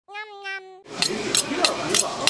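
A short two-part pitched tone opens, then about a second in a kitchen knife is sharpened on a honing steel: quick metallic scraping strokes, about three a second. Voices murmur behind.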